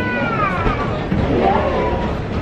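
A person's drawn-out, sing-song vocal sound that falls in pitch over about a second, then a shorter call that rises and falls, amid laughter.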